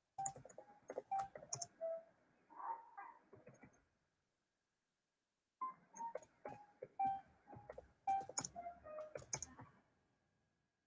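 A short electronic melody of pitched notes with clicky percussion played back twice, each run lasting about four seconds and cutting off abruptly: a section of a song in progress being previewed in music software.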